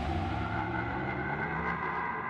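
Electronic music: a steady low bass drone under several held synth tones, with no beat.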